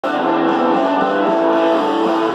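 Sunburst Les Paul-style electric guitar being played, notes ringing out and sustaining, with a change of notes about a second in.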